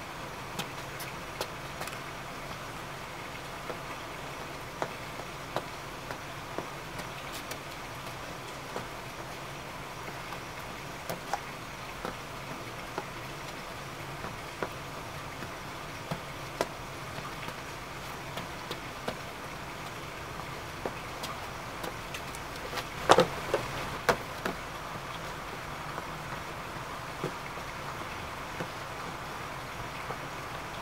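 Steady outdoor background noise, like distant traffic, with scattered light ticks throughout and a louder cluster of sharp knocks a little past two-thirds of the way in.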